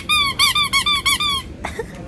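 Squeaky dog toy squeezed over and over: about seven quick, even squeaks in a second and a half, each rising and falling in pitch.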